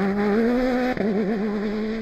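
Rivet off-road rally buggy's engine running at steady high revs as it drives through mud. The pitch wavers briefly about a second in, then holds steady again.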